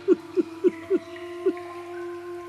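A man sobbing in short catches of breath, each a brief voiced 'huh' falling in pitch, several in quick succession and then one more, over soft sustained background music.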